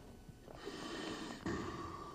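Faint breathy rush of a rescue breath blown mouth-to-mouth into a CPR training manikin: one breath of about a second, then a second, shorter rush. The breath tests whether the airway is open.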